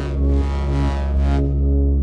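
Electronic track playing back: a sustained deep bass and synth chords, sidechain-compressed against the drums so that they pulse in rhythm with them. About midway the bright top end drops away, leaving the bass and chords.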